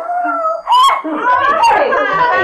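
A woman's high-pitched held cry, then a sharper rising cry, running into agitated talking.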